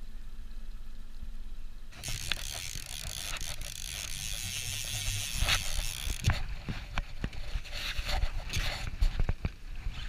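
A conventional fishing reel being cranked against a hooked fish, its gears and ratchet ticking rapidly. Over it runs a steady rushing noise that starts suddenly about two seconds in.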